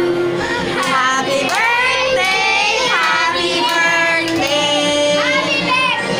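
A song playing: a high, child-like singing voice with gliding, held notes over a steady musical accompaniment.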